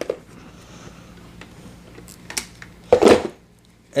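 Hard plastic parts of a Shark Apex Powered Lift-Away vacuum and its caddy being handled: a few light clicks, then a short louder clunk about three seconds in as the vacuum body is fitted to the caddy.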